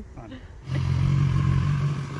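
BMW S1000XR inline-four engine starting up about two-thirds of a second in and settling straight into a steady idle.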